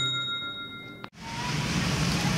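A bell-like notification ding from a subscribe-button animation rings and fades over the first second. The sound then cuts suddenly to street ambience with traffic.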